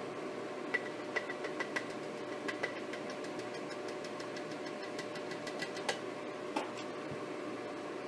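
A plastic blender cup tapping and clinking against the rim of a glass jar as powdered egg is shaken out of it, a string of light clicks that stops shortly after the middle, over a steady background hum.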